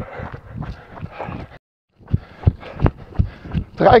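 A jogger's footfalls on a path in a steady running rhythm, about three steps a second, picked up by a handheld camera bouncing with each stride. The sound cuts out completely for a moment just under two seconds in.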